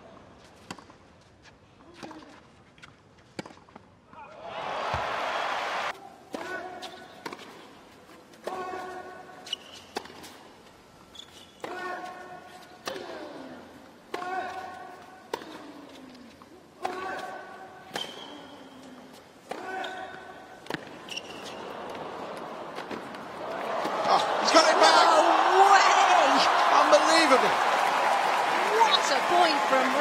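Tennis rally with racquets striking the ball about once a second, most strikes followed by a player's short grunt. A brief burst of crowd noise comes about four seconds in. Near the end the crowd cheers and applauds loudly as the point is won.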